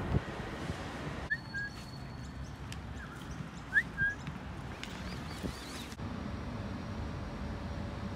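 Outdoor background noise with a few short, rising bird chirps between about one and five seconds in. The background changes abruptly at the edit points, and after about six seconds only a faint steady hum remains.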